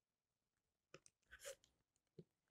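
Near silence broken by a few faint, short crunches about a second in and again half a second later: a rotary cutter blade rolling through quilting cotton against an acrylic template on a cutting mat.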